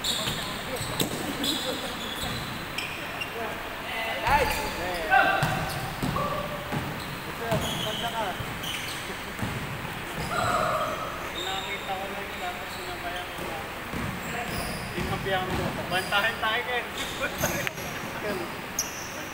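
A basketball bouncing on an indoor gym floor during a pickup game, as players dribble and run, with short high squeaks and players' shouts in the large hall.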